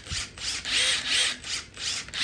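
Makita cordless impact drivers blipped with quick trigger pulls, spinning free without load: short whirring bursts, about three a second, each spinning up and winding down.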